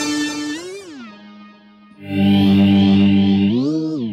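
Microkorg synthesizer notes played through an Electro-Harmonix Small Stone phaser into a Boss DD-2 digital delay. A held note bends down in pitch and fades about a second in. A new, lower note starts about two seconds in and bends up near the end.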